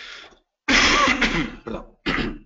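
A man clearing his throat: one loud, rough burst about a second long, after a soft breath-like hiss.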